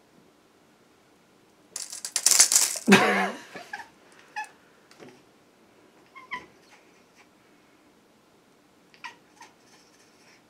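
A house cat hisses and gives a short growling yowl about two seconds in, agitated by a tape measure blade held toward it. A few faint clicks and small cat sounds follow.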